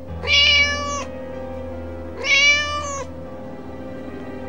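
A kitten meowing twice, each meow just under a second long with a slight rise and fall in pitch, about two seconds apart, over soft background music.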